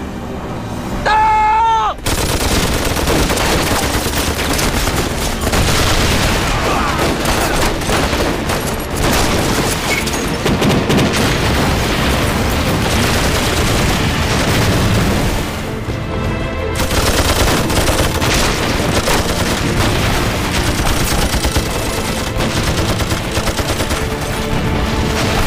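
Battle sound effects: a brief high wavering tone, then about two seconds in dense rifle and machine-gun fire with explosions breaks out suddenly and keeps going, mixed with dramatic music.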